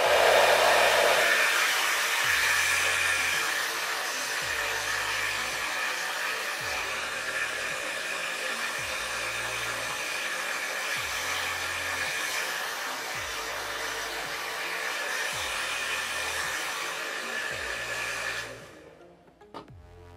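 Handheld hair dryer running steadily, a rush of air with a faint high whine, blowing on hair gel along the hairline to dry it tacky. It switches on right at the start and cuts off near the end.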